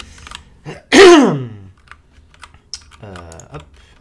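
A single loud cough about a second in, its voice dropping in pitch. Light clicks of typing on a mechanical computer keyboard come before and after it.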